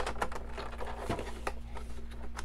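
Toy packaging being handled: a scattering of light, irregular clicks and taps from the cardboard box and plastic packing.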